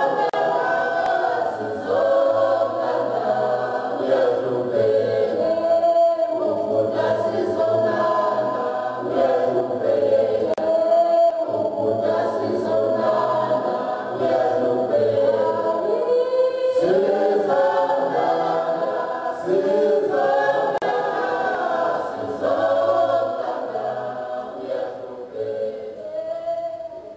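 Unaccompanied choir singing, several voices on long held notes over a low sustained part, starting to fade near the end.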